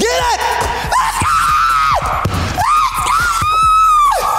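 Men shouting and screaming in high-pitched excitement, in several long yells, the loudest and longest held near the end.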